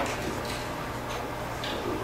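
Meeting-room quiet with a steady low hum and a few faint, light ticks or clicks.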